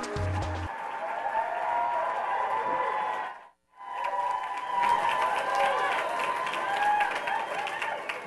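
Intro music with a heavy bass beat stops under a second in. Audience applause and cheering follow, cutting out briefly near the middle before going on.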